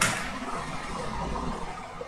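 Background noise from a recording microphone: a steady low hum under a faint even hiss, with no distinct event.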